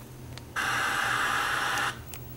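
Static hiss from a 13-inch Sanyo CRT television's speaker on an untuned channel. It cuts in about half a second in, holds steady, and cuts off abruptly just before the end.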